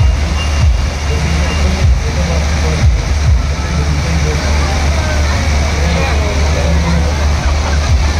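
Fairground din: loud music with a heavy, steady bass hum and short falling bass sweeps, under the chatter of the crowd.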